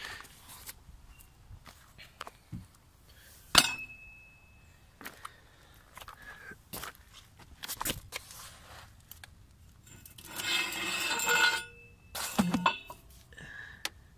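Metal hand tools being handled while a breaker bar is set on a drain plug: scattered clicks and knocks, one sharp metallic clink about three and a half seconds in that rings briefly, and a stretch of scraping and rustling between about ten and twelve seconds in.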